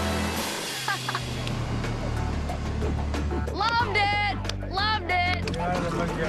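Background music with excited people yelling and whooping, most loudly in the middle of the stretch.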